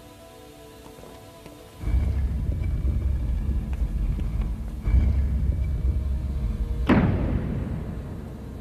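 Dramatic thunder sound effect: a deep rumble that starts suddenly about two seconds in and surges again near five seconds, then a sharp crack that rings away near the end. Soft music with steady tones comes before it.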